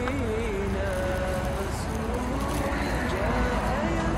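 Unaccompanied nasheed-style singing, a voice holding long wavering notes, over a steady low rumble of road traffic.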